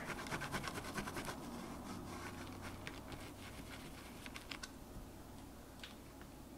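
Small sponge dabbing paint through a plastic stencil onto card: a quick run of soft taps over the first second and a half, then only a few scattered ones.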